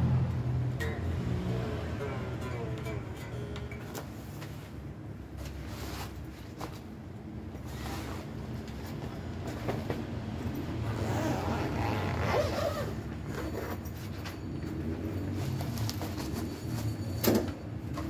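Handling and packing noises as an electric guitar is readied for shipping: the tuning pegs are turned to slacken the strings, then a padded gig bag is handled and settled into a box lined with bubble wrap, with rustling over a steady low hum. A sharp knock comes near the end.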